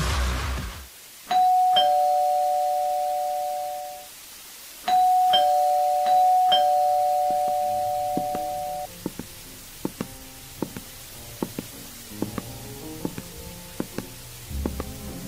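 Two-tone doorbell chime rung twice, ding-dong: a higher note and then a lower one, each ringing on for a few seconds; on the second ring the low note sounds twice. A noisy hiss dies away in the first second, and faint scattered clicks and soft notes follow the chimes.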